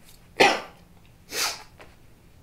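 A man coughing twice, about a second apart, the second cough softer.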